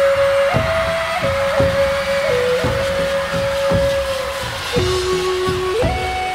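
Instrumental Andean music: a panpipe plays a slow melody of long held notes over a rhythmic accompaniment. The melody dips to a lower note near the end, then climbs back up.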